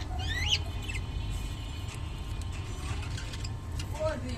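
Budgerigars chirping: a couple of quick sweeping chirps in the first half-second, then fainter chatter and scattered faint clicks over a steady low hum.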